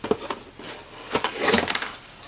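Cardboard accessory box handled and its lid flipped open: a couple of knocks, then a scraping, rustling stretch of cardboard in the second half.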